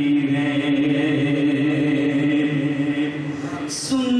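Unaccompanied male singing of an Urdu naat through a microphone and PA, drawn out in long held, slowly wavering notes. Near the end the voice breaks off briefly with a short hiss of breath before the next line starts.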